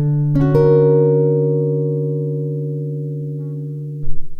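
Nylon-string Yamaha silent guitar: a low bass note, then the closing chord plucked about a third of a second in and left to ring, fading slowly.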